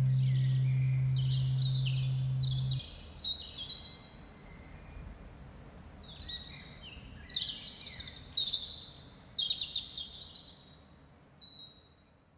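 Birds chirping and singing in many short, quick calls, while a held low note dies away in the first three seconds.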